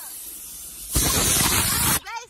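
A faint hiss of rushing air, then about halfway in a much louder rushing hiss that cuts off suddenly.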